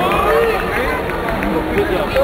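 Crowd chatter: many people talking at once, with overlapping voices and no single clear speaker.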